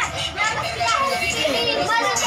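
Children's excited voices, several talking and calling out over each other as they play.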